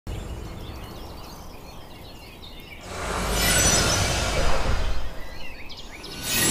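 Birds chirping over quiet outdoor ambience, then about three seconds in a loud rushing whoosh of noise swells up, lasts a couple of seconds and dies away.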